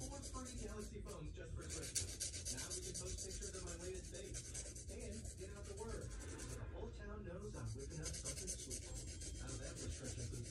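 Steady scratchy rubbing of fabric against the phone's microphone, with a single sharp click about two seconds in.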